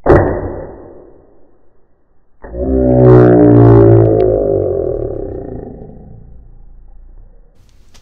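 Slow-motion playback of a small single-shot Nerf blaster firing, the audio slowed and deepened. A sudden deep thud fades over about a second, then a second, long low drone starts a couple of seconds in, falls slowly in pitch and fades out.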